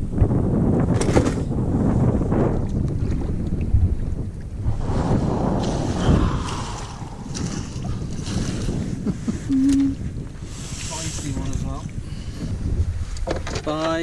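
Wind rumbling on the microphone over water sloshing and knocks against a small boat as a pike is landed in a landing net and lifted aboard.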